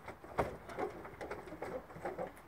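Knocks and scrapes of hard-shell suitcases being pushed into place on the floor of a van's rear luggage compartment, the loudest knock a little under half a second in.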